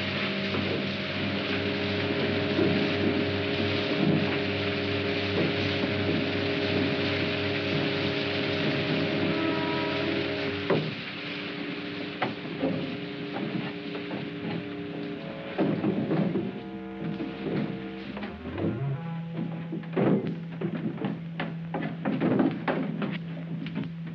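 Film-score music of sustained orchestral chords over a steady rushing water sound. About halfway through, the water noise drops and scattered knocks and clicks come in. A low held note enters near the end.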